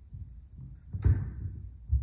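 Fencers' feet thudding and stamping on a wooden hall floor during steel sword sparring. The loudest stamp comes about a second in, with a sharp high click, and a second heavy thump comes near the end.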